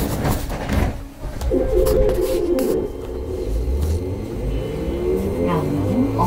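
Interior of a Uijeongbu light rail train: low running rumble with a steady tone for about a second, then from about five seconds a rising whine from the electric traction drive as the train gathers speed.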